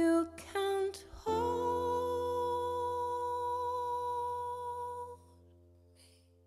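A woman's voice sings a few short notes, then holds one long hummed note over sustained chords from a Nord Stage 2 electric keyboard. The voice stops about five seconds in and the chord fades away, ending the song.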